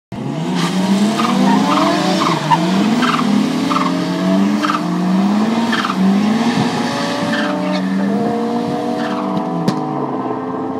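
Cosworth-engined Mk1 Ford Escort drag car revving hard at the start line, its engine note rising and dropping back about once a second. Tyres are squealing as it does a burnout.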